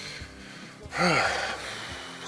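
A man's breathy exhale with a short hummed vocal sound about a second in: a thinking pause in the middle of a sentence.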